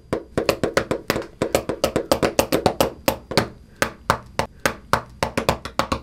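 Pens drummed on a school desk like drumsticks: a fast, uneven beat of sharp taps.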